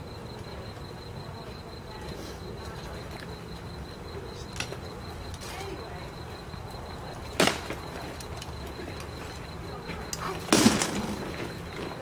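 Sharp cracks of rattan sword blows landing in armoured sparring: one loud strike about seven seconds in and a quick cluster of hits about ten and a half seconds in, the last with a short low ring.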